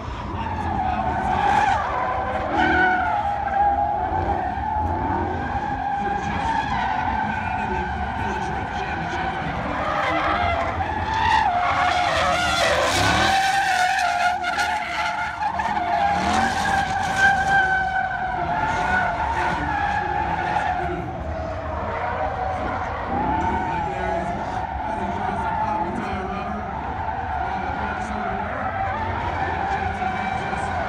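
Drifting Ford Mustang: the engine revs up and down as the tyres screech through a drift, with the tyre noise loudest in the middle.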